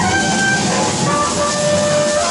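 Free-improvised ensemble of bass clarinet, cello and two drum kits playing a dense, continuous texture. A busy wash of drums and cymbals lies under several short held high notes that shift in pitch.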